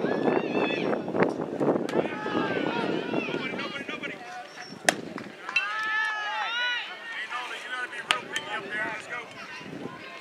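Spectators' voices and chatter at a youth baseball game. About five seconds in comes a single sharp crack of a baseball impact, followed at once by high-pitched shouts and yelling.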